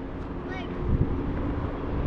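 Wind buffeting a handheld camera's microphone, an uneven low rumble, with one faint spoken word.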